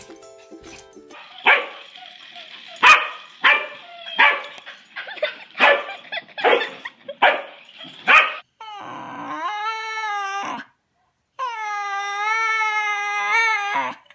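A dog barks sharply about nine times in quick succession. Then a dog howls in two long calls that waver in pitch, near the end. A little background music plays at the very start.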